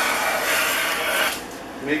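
Stanley No. 130 double-end block plane taking a shaving along the edge of a board held in a vise: one steady scraping stroke that dies away about a second and a half in. The freshly restored plane is cutting cleanly, working fine.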